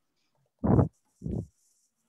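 Two short breathy voice sounds from a woman, a soft laugh.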